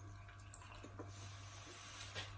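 Faint chewing of a chocolate-and-walnut cup, a few soft crunches and mouth clicks over a low steady hum.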